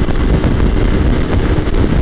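2006 Kawasaki Ninja 250R's parallel-twin engine running hard under throttle at highway speed, mixed with heavy wind noise on the microphone.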